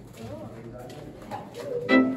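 Faint, indistinct voices echo in a rock tunnel. Near the end, violin music starts abruptly and becomes the loudest sound.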